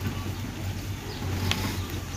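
A steady low hum during a pause in speech, with a single faint click about one and a half seconds in.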